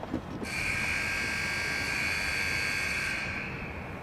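Electric buzzer of a chain-link security gate, the signal that the gate lock is being released. It gives a steady, high, rasping buzz that starts suddenly and fades out after about three seconds.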